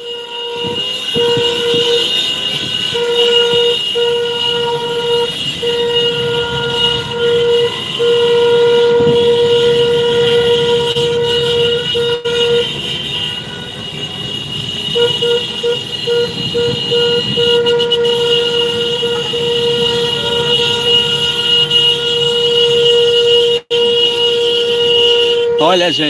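Vehicle horn blaring in one long steady tone, broken into short repeated honks for a few seconds at a time, over engine and road rumble in a motorcade.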